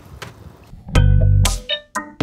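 Background music with plucked guitar and bass comes in loud about a second in. Before it there is a faint steady hiss of tap water running into the sink.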